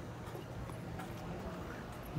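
Quiet outdoor background: a faint low rumble with a few soft, scattered clicks.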